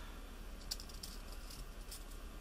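A few faint light clicks and rustles as fingers draw a silk strip through a hole in a heated metal tube-making tool.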